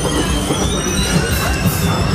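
Loud maze effects soundtrack: a dense, steady rumbling noise with several high whining tones held over it.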